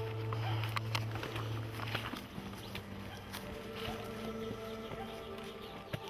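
Footsteps crunching and dry brush rustling and snapping as several people walk through undergrowth, in short irregular crackles. A steady low hum runs underneath and is strongest in the first couple of seconds.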